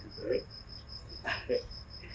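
Insect chirping steadily, a high pulse repeating about five times a second, under a man's brief words.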